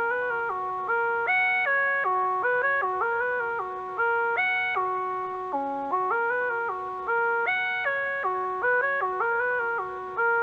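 A soft synth lead from the Xpand!2 plugin playing a melody on its own. It plays a looping phrase of short stepped notes that comes round about every three seconds.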